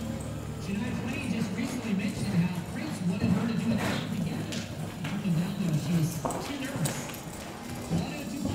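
A horse's hoofbeats at a canter on arena sand, with a voice and background music over them.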